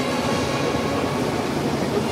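Procession band playing a march with held chords, a dense, steady sound.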